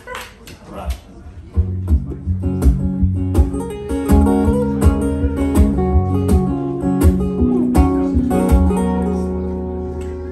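Two acoustic guitars start an instrumental intro about a second and a half in, playing steady strummed chords with changing notes over them; before that there are only a few soft plucks.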